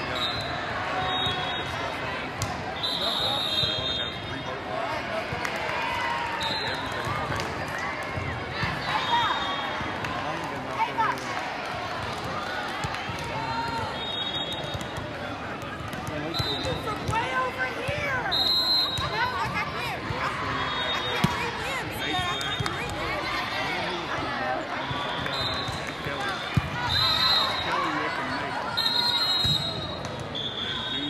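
Busy indoor volleyball hall: many overlapping voices of players and spectators, with volleyballs bouncing and thudding on the hard court floor and frequent short high squeaks of sneakers, plus a few sharper thuds of balls being hit.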